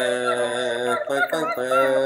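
A voice singing a tune in long held notes, broken briefly twice near the middle, with short chirpy sounds over it.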